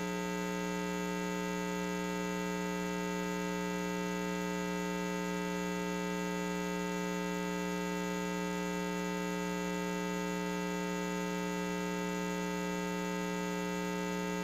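Steady electrical mains hum: a low, buzzy tone with a ladder of higher overtones that does not change.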